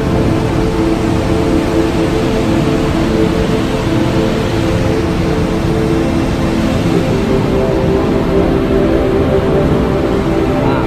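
Background music of sustained, droning tones over a steady rushing noise.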